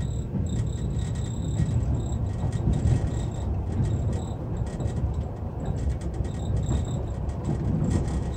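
Steady low rumble of a passenger train running along the line, heard from inside the carriage. A faint high-pitched chirping comes and goes over it.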